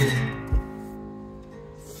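Open strings of an Overhead travel acoustic guitar brushed as the guitar is turned over, ringing together and slowly fading, with a dull low thump of the body about half a second in.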